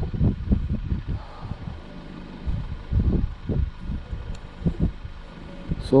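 Wind buffeting the microphone in irregular low gusts.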